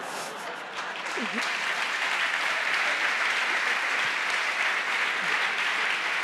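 Theatre audience applauding, building up over the first couple of seconds and then holding steady.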